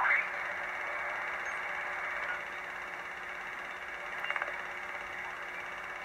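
Receiver hiss from a uBitx HF transceiver in LSB, tuned down through about 2.2 to 1.85 MHz: steady, fairly quiet band noise. It is low because the newly fitted broadcast-band high-pass filter now blocks AM broadcast signals. A short burst of clicks comes about four seconds in.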